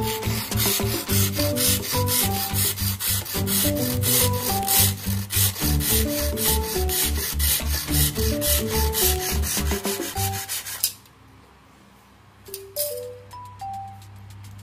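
Hand-held hacksaw blade sawing through a tent pole section in quick, even back-and-forth strokes, stopping about eleven seconds in once the marked piece is cut off. Background music plays underneath.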